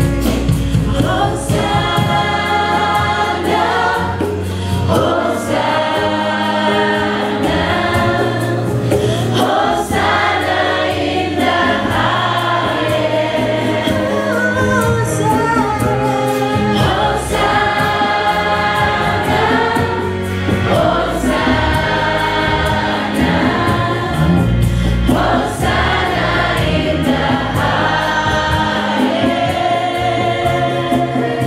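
Gospel worship choir of mixed voices singing with women lead vocalists on microphones, with a steady low bass line underneath.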